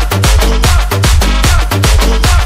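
Electronic dance music, a hard trance remix: a fast, steady kick-drum beat over heavy, sustained bass with bright synth layers on top.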